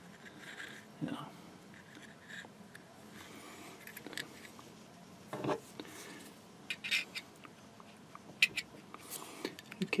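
Faint handling noise from a Zippo lighter's metal insert being turned over in the hands: a few scattered small clicks and light scrapes.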